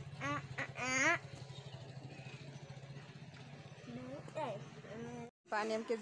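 Motorcycle engine running steadily at low revs, with voices calling out loudly over it in the first second and again about four seconds in; the engine sound cuts off suddenly near the end.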